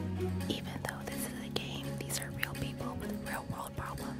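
Soft background music with low sustained notes, with faint whispery voices over it.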